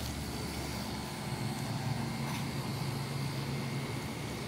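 A steady low engine hum, like a motor vehicle running nearby, a little stronger from about a second in.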